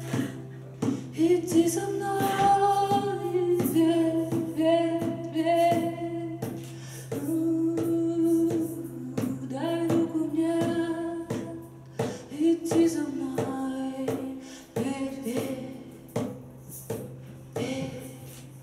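A woman singing live with her own acoustic guitar, holding long sung notes over steady strumming.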